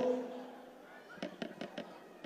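A man's voice dies away in the hall's reverberation, then about a second in comes a quick, irregular run of faint sharp clicks.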